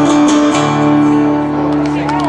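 Steel-string acoustic guitar strumming the closing chords of a song, struck again about half a second in and left ringing.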